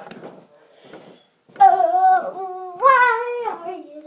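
A girl singing a short phrase of held notes, starting about a second and a half in: two sustained notes, then a higher one that slides back down near the end.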